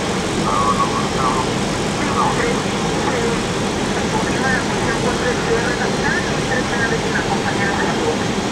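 Steady in-flight cockpit noise of an airliner: an even rush of air with a low hum underneath. Faint voices come through now and then.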